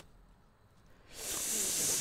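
Plastic film seal being slowly torn off a plastic cup: a drawn-out ripping hiss that starts about a second in and lasts just under a second.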